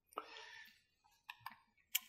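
A few faint clicks and a brief soft rustle: one click with a short rustle just after the start, then three small clicks spread through the rest.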